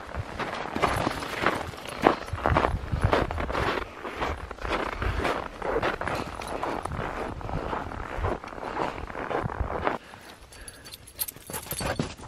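Footsteps in packed snow at a walking pace, about two steps a second; they turn quieter about ten seconds in.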